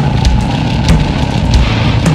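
Goregrind band playing live through a festival PA: heavily distorted, down-tuned guitars and bass churn under fast drumming with crashing cymbals.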